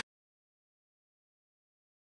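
Silence: the sound track cuts out completely, with no sound at all.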